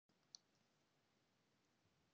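Near silence: faint room tone with one short, faint click about a third of a second in.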